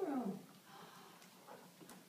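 A person's drawn-out vocal sound gliding down in pitch and fading over the first half second, then a quiet room with a few faint clicks.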